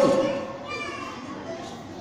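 A man's amplified voice trails off at the start, leaving faint children's voices in the background of a large room.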